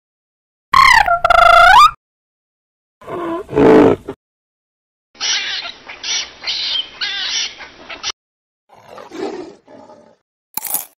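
A run of separate animal calls played as sound effects: a pitched call that glides down and up about a second in, a lower call around three seconds in, a longer pulsing stretch of calls from about five to eight seconds, and a weaker call near the end.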